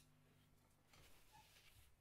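Near silence, with a faint steady low hum.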